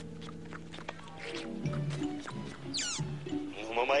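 Cartoon dog licking a man's face, with slobbery dog noises and a quick high falling squeal about three seconds in, over background music with a pulsing bass line. A man's voice begins protesting at the very end.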